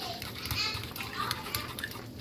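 Children's voices chattering faintly in the background while a metal spoon stirs a thin flour slurry in a ceramic bowl, with a steady low hum underneath.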